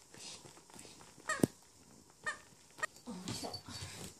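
Corgi puppy vocalizing in play: a few short high-pitched yelps with a sharp knock among them, then low grumbling play growls near the end.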